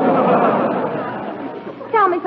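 Studio audience laughing, loudest at first and dying away over about two seconds.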